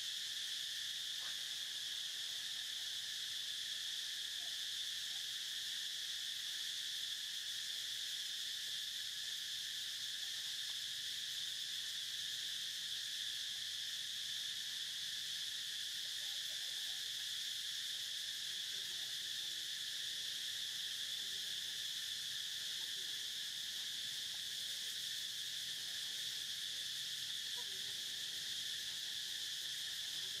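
Steady, high-pitched drone of an insect chorus, even and unbroken throughout.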